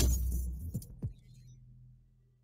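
Logo-reveal sound effect: a deep boom with a bright jingling shimmer at the start, dying away over about a second and a half to near silence.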